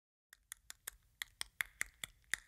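A quick, even run of sharp clicks, about five a second, starting shortly after the start.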